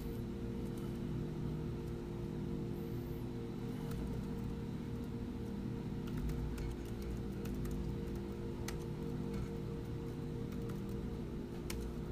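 A few scattered computer keyboard keystrokes over a steady low hum.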